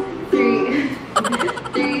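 Ukulele strummed in repeated chords, a new strum about every half second.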